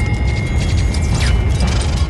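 Dramatic film sound effects for a flying sword: rapid metallic clicking and rattling with a few falling whooshes over a deep rumble, under background music.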